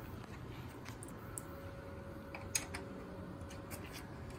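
A few faint, light clicks of a small screw and wrench being handled at a printer stand's basket bracket, the most distinct about two and a half seconds in.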